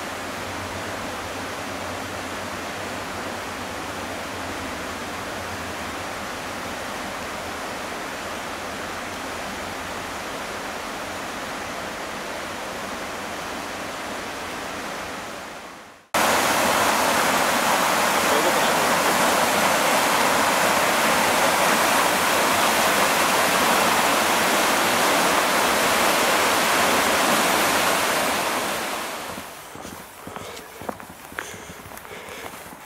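A steady soft hiss, then after a sudden cut about halfway, a fast-flowing river rushing over rapids: a much louder, even rushing sound that fades out near the end.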